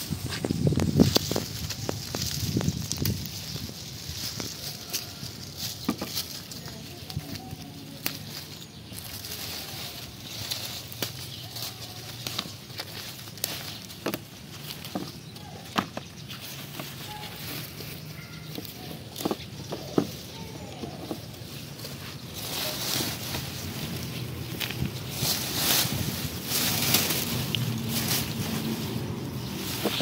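Dry kidney bean vines and leaves rustling and crackling as they are parted by hand, with sharp clicks and snaps as pods are picked. The rustling grows louder near the end.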